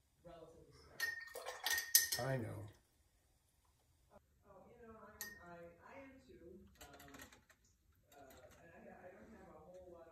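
A paintbrush clinking against a glass water jar: a quick run of sharp clinks with a short ringing note about a second in, then one more clink about five seconds in.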